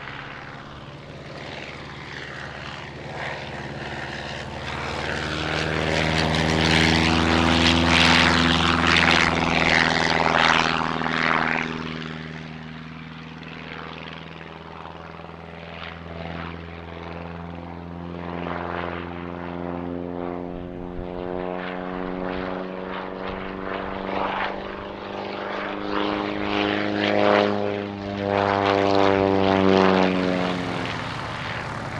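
Propeller biplane engine flying past: it grows louder, peaks about a third of the way in and drops in pitch as the plane goes by. It then fades and builds again for a second pass near the end.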